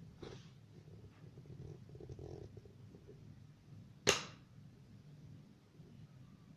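Quiet room with a low steady hum and faint movement sounds; a single sharp click or knock about four seconds in stands out as the loudest sound.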